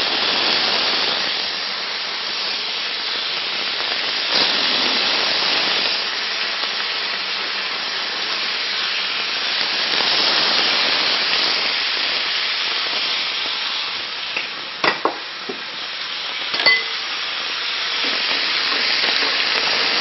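Bacon strips sizzling as they fry in a hot frying pan, a steady hiss throughout. A couple of short clicks come about three-quarters of the way through.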